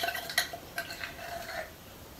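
Light taps and scrapes on a small wooden mortar as crushed garlic is knocked out of it into a pot, a few sharp clicks in the first second and a half, then quieter handling.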